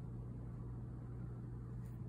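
Room tone: a steady low electrical hum under a faint even hiss, with no distinct brush strokes standing out.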